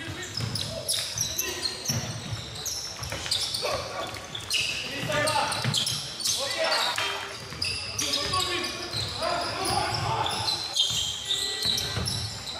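Live basketball play on a hardwood court: the ball bouncing, with many quick knocks and short high squeaks from play, under players' shouts and calls.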